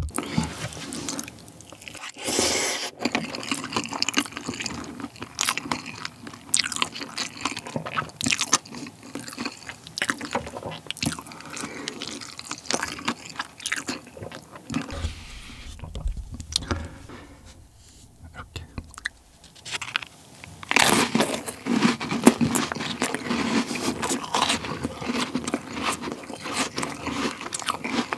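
Close-miked eating sounds: chewing and slurping of spicy cold buckwheat noodles, with many irregular wet mouth clicks and smacks. A louder run of slurping and chewing comes about three quarters of the way through.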